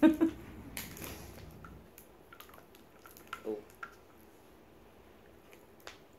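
A short burst of laughter, then faint clicks and crinkles of a plastic water bottle being handled and drunk from.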